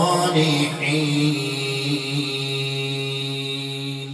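A man's voice chanting Quranic recitation into a handheld microphone: an ornamented, wavering phrase that settles into one long held note, slowly fading toward the end.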